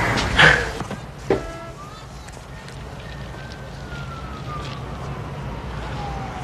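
A siren with a single tone that rises slightly, then falls slowly in pitch, over steady street background noise. It follows a sharp knock about a second in.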